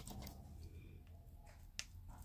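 Two faint sharp clicks from a plastic tail comb and tint brush being handled while henna paste goes onto the hair roots: one right at the start and a sharper one near the end.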